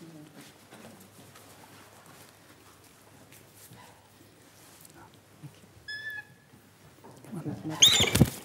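New Zealand falcon calling: a brief string of short high notes about six seconds in, then a louder call near the end with its wings flapping.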